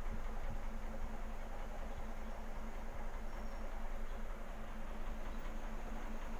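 Aquarium pump running: a steady low hum under an even rushing noise.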